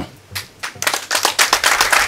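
Audience clapping, starting just under a second in as a dense patter of many hand claps.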